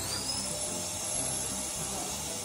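A steady whirring machine noise, like an electric motor running. A high whine rises as it starts at the beginning, then holds level.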